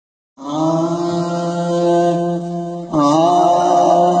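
A male voice chanting a naat in long, drawn-out held notes, over a steady lower drone. It starts abruptly, then near three seconds in briefly breaks and slides onto a new held note.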